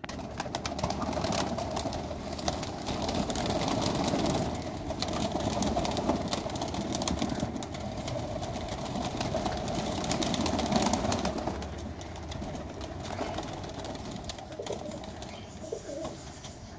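A flock of domestic pigeons cooing together in a dense, overlapping chorus, with many small clicks throughout.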